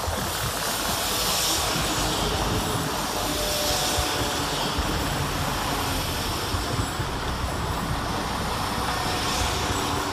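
West Midlands Railway Class 172 diesel multiple unit passing close by as it runs into the station: engine drone and wheels on the rails making a loud, steady noise.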